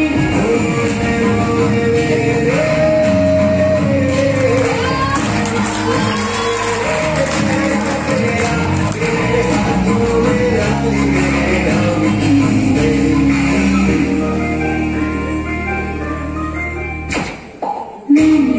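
A mehndi song playing: a woman singing a gliding melody over instrumental backing. The music briefly drops and breaks about a second before the end.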